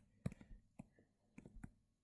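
A few faint, scattered clicks and taps of a stylus tip on a tablet screen during handwriting.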